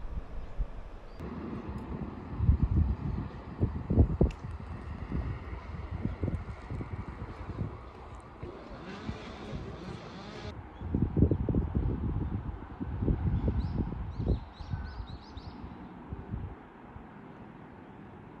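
Wind buffeting the microphone in irregular low gusts over a faint outdoor hum, with a brief hiss about halfway through and a few faint high chirps near the end.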